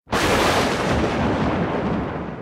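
A boom sound effect: a loud burst of rumbling noise that starts abruptly and slowly fades away.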